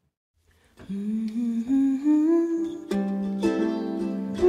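After a brief silence, a woman's voice hums a slowly rising wordless melody. About three seconds in, strummed acoustic string chords join her as a new piece begins.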